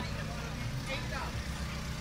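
A steady low mechanical hum, like a running engine or motor, with faint voices in the background.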